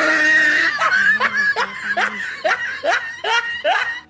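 A woman laughing loudly: one long opening burst, then a run of about seven short rising 'ha' pulses, roughly two or three a second, that stops abruptly near the end.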